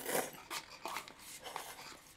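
Noodles slurped in a short hissing pull at the start, followed by soft wet chewing and mouth sounds.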